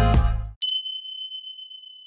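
Backing music with rapping cuts off about half a second in, and a single bright ding sound effect follows: one high chime that rings on and fades slowly.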